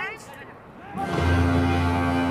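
Stadium full-time horn sounding, a loud, steady low tone that starts about a second in after a brief lull. It signals that time is up in the match and the last play has begun.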